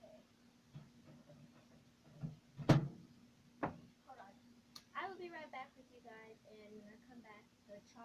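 A microwave oven door shut with one loud clack, followed by a couple of lighter clicks as its buttons are pressed. Indistinct voice sounds follow in the second half.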